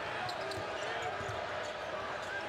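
Steady arena crowd murmur during live college basketball play, with a basketball being dribbled on the hardwood court.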